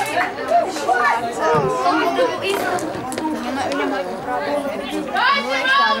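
Several people's voices talking and calling out over one another, with one voice louder and higher near the end.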